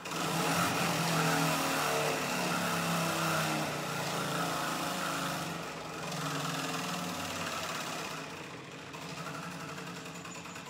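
Large prize wheel spinning, its pointer ticking rapidly over the pegs in a fast, dense run. The sound starts abruptly as the wheel is spun and slowly fades as the wheel loses speed.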